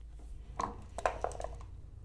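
A few light, sharp clicks of backgammon pieces on the board: a checker being moved and the dice being gathered into the dice cup.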